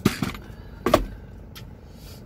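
Two brief clunks about a second apart inside a car cabin, over a steady low rumble.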